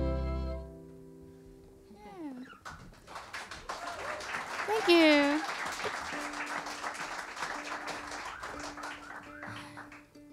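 The final chord of an acoustic string band (guitar, mandolin, upright bass) rings out and fades within the first second. Then a small group claps and whoops, with two short calls about two and five seconds in, and a single steady note is held under it in the last few seconds.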